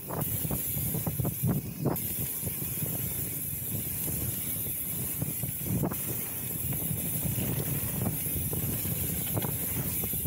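Mountain bike rolling fast down packed-dirt singletrack: steady tyre noise on the dirt and wind on the microphone, with a few short knocks as the bike rattles over bumps, about a second and a half in, near two seconds and near six seconds.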